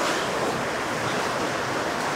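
A steady rushing hiss of background noise, even throughout, with no strikes or tones in it.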